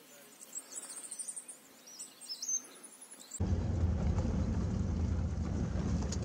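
Small birds chirping, in quick high calls, over a quiet outdoor background. About three and a half seconds in, it cuts abruptly to the steady low rumble of a vehicle driving.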